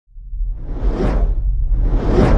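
Whoosh sound effect over a deep rumble, rising from silence and swelling to a peak about a second in.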